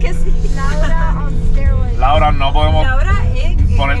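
A man's or woman's voice singing a song in Spanish over music, heard inside a moving car, with a steady low road-and-engine rumble underneath.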